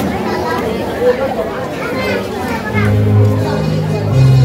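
Voices with music: talking or singing for the first couple of seconds, then steady low accompaniment notes come in about three seconds in.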